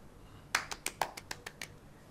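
A man's short, breathy laugh: about eight quick, even pulses of breath, roughly six a second, starting about half a second in and stopping after about a second.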